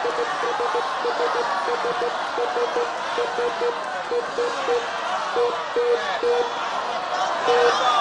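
Game-show prize wheel spinning and slowing down: a run of short, even ticks that come fast at first and space out as the wheel winds down. Under it, a studio audience is shouting and chattering.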